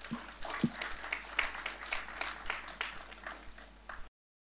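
Audience applause at the end of a talk, heard as a scattering of separate claps rather than a dense roar.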